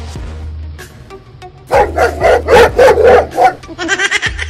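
A dog barking: a quick run of about six loud barks in the second half, over background music with a low, steady bass drone.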